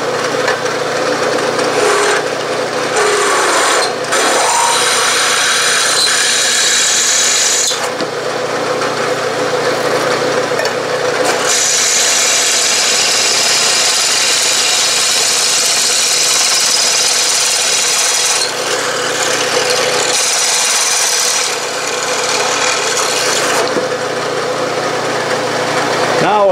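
Half-inch twist drill in a milling machine cutting into an aluminum casting, opening up a pilot hole. The machine hums steadily underneath, and a rough, high-pitched cutting noise comes in three stretches, the longest through the middle.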